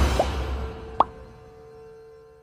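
Intro music fading out, then two short rising pop sound effects from a subscribe-button animation: a faint one just after the start and a louder one about a second in.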